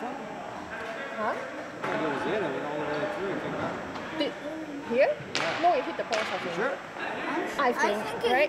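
Indistinct talking and calling among players on a gym floor during ball hockey, with two sharp cracks about five and six seconds in.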